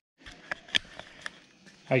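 A moment of dead silence at an edit cut, then a few faint, sharp clicks and taps of a handheld camera being handled and turned around; a man starts speaking near the end.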